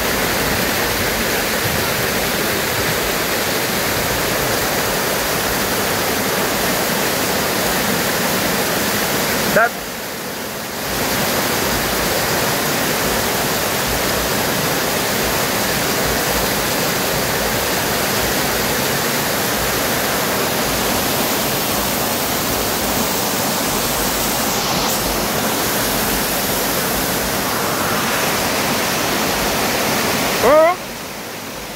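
Waterfall water rushing and splashing steadily down stepped rock terraces. The sound dips briefly about a third of the way in.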